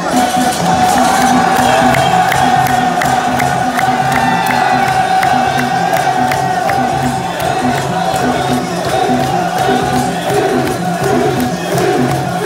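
Large crowd cheering over loud music, which has a steady drumbeat and a long held high note.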